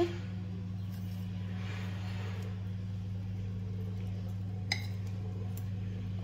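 A steady low hum with one short, sharp click a little over four and a half seconds in.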